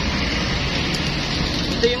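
Steady noise of street traffic.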